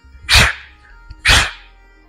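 Two sharp breaths forced out through the mouth about a second apart, a boxer exhaling with each hook as he throws two punches at the air.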